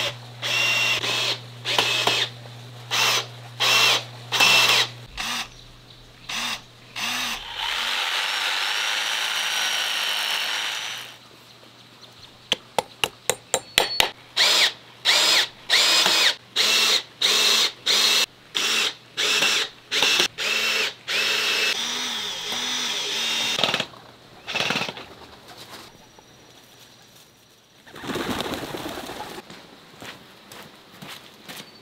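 Power drill working into wooden railing posts, run in many short trigger bursts whose pitch climbs as each one spins up. Two longer steady runs of about three seconds come near a third of the way in and again past two-thirds.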